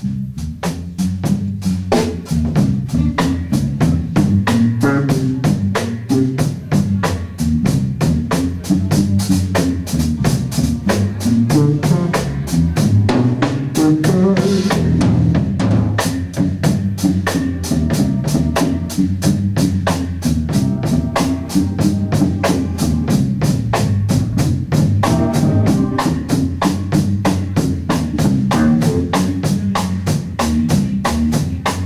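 Live jazz-rock band playing: a busy drum kit with steady strokes drives the groove under an electric bass line, with guitar and keyboard chords above.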